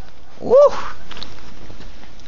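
A puppy gives one short, high yip, its pitch rising and falling.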